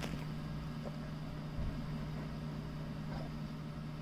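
Steady low electrical hum of a room appliance with faint background noise, and a soft low thump about one and a half seconds in; the squeaker is not pressed.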